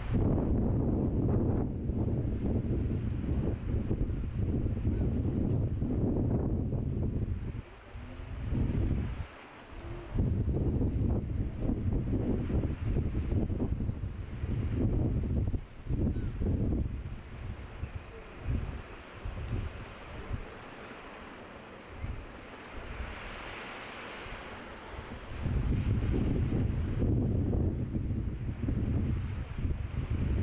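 Wind buffeting the microphone in gusts, a heavy rumble that drops out briefly several times, over the hiss of choppy sea and surf. The wind eases for a few seconds past the middle, leaving mostly the wash of the waves, then picks up again near the end.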